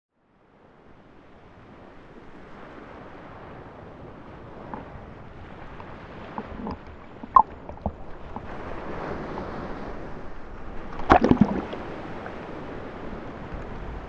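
Sea water lapping and sloshing at the surface beside an inflatable boat, fading in from silence and building to a steady wash. A few small knocks and splashes, then a louder burst of splashing about eleven seconds in.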